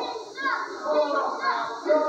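A small crowd of spectators, children's voices among them, shouting and calling out over one another.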